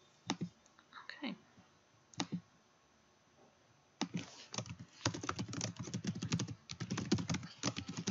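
Typing on a computer keyboard: a few separate clicks in the first half, then a quick run of keystrokes from about halfway as a name is typed in.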